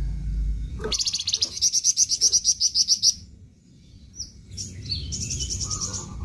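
A flamboyan songbird singing a rapid, high trill of evenly repeated notes, about nine a second, for around two seconds. After a short pause it gives a second, shorter trill near the end. A low rumble underlies the first second.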